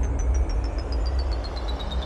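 A sound effect in a song's instrumental break: a rapidly pulsing high tone falling steadily in pitch, over a deep rumble.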